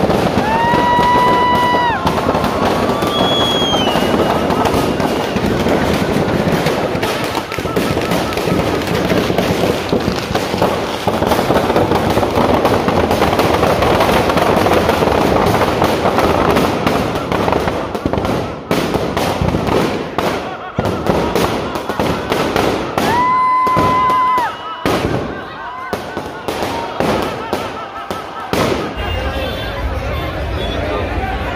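Firecrackers packed in a burning Ravan effigy crackling and popping in a dense, continuous barrage. A steady whistle-like tone sounds twice over it, about a second and a half each time: about a second in and again about three-quarters of the way through.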